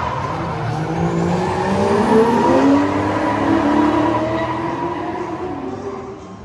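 Drift cars sliding sideways, engines held at high revs with tyres skidding. The engine note climbs over the first few seconds, then the sound fades toward the end as the cars move away.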